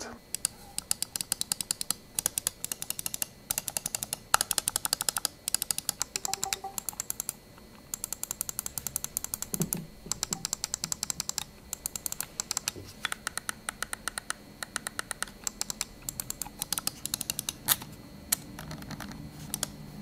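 Razer Basilisk V3 gaming mouse, fitted with Razer second-generation optical switches, clicked over and over. Its buttons give sharp clicks in quick runs, with short pauses between the runs.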